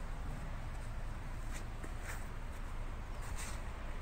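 Outdoor background noise: a steady low rumble with a few faint, brief rustles.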